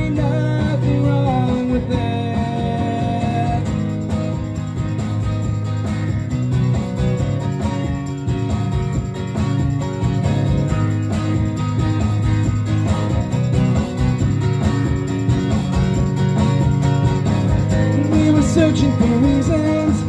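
Acoustic guitar strummed in a steady rhythm, playing an instrumental passage of a rock song between sung lines.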